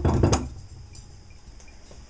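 A few metal clanks and clinks in the first half-second as a steel C-clamp and the ax head are handled on the workbench, then only faint handling noise.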